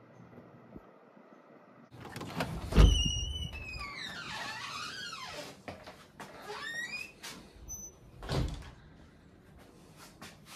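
Hinged entry door of a small post office being opened: a clack from the lever handle and latch about two seconds in, then a long squeaky squeal from the door as it swings, wavering down and back up in pitch. A second thud comes near the end.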